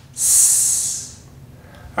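A man's voice making a long hissing 'sss', the single sound that the double letters 'ss' stand for, lasting just under a second.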